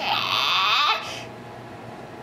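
A baby's high-pitched squeal of delight lasting about a second, then it stops.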